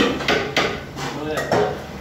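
Large metal cooking pots and utensils clanking, several sharp metallic knocks with a brief ringing after each, the loudest right at the start.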